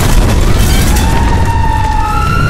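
Explosion sound effect: a loud, deep, sustained rumble, with a high whining tone coming in about halfway through.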